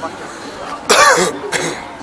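A person coughing close to the microphone: one loud cough about a second in, then a shorter second one, over steady street background noise.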